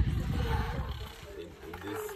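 Low rumble on the microphone that fades about a second in, with faint voices in the background.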